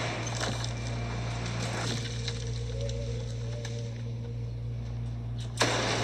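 Horror film trailer sound design: a low, steady, eerie drone with a faint wavering tone near the middle, ending in a sudden louder hit near the end.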